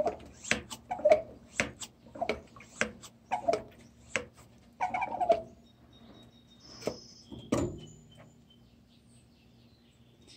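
Hand pump of a multi-purpose garden pump sprayer worked in about nine quick strokes, a little under two a second, to rebuild the tank pressure after the spray ran low. The pumping stops, and a couple of seconds later there is a single sharp knock.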